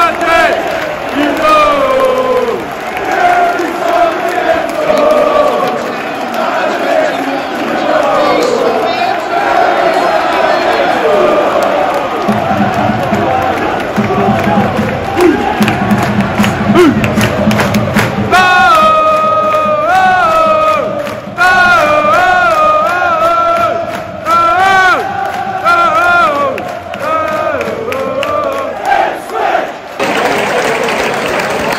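Large football stadium crowd singing and chanting. From about two-thirds of the way in, one repeated chant stands out over rhythmic clapping.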